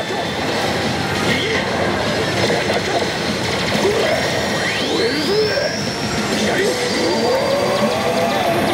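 Steady, dense din of a pachislot hall: many slot machines' electronic effects and music blended together, with the played machine's own effects on top. A rising electronic whistle sweeps upward about halfway through.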